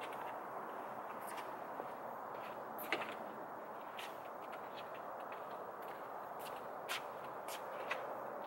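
Footsteps and a few scattered light clicks and knocks from a car door being handled, over a steady background hiss.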